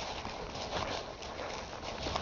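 Footsteps on dry fallen leaves, the leaves rustling with each step in a steady walking rhythm.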